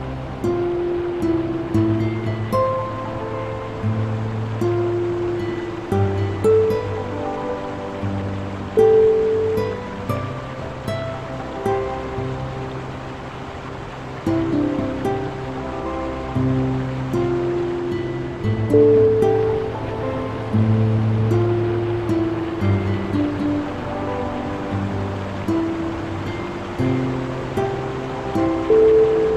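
Calm, slow piano music with low bass notes under a gentle melody, laid over the steady rush of a fast-flowing river.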